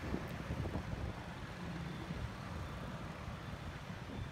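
Steady low rumble of motor vehicles running.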